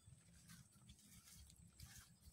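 Near silence: faint open-air field ambience with soft, irregular rustles.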